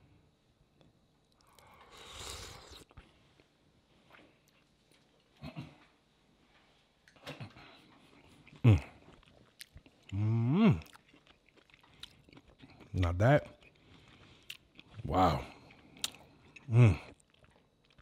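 A man tasting hot etouffee off a spoon: a breathy slurp about two seconds in and quiet chewing, then about five short, pitch-bending "mmm" hums of approval.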